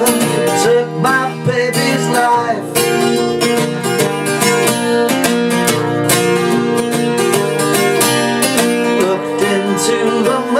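Acoustic guitar playing an instrumental passage between sung verses, chords strummed with picked notes, strumming busier from about three seconds in.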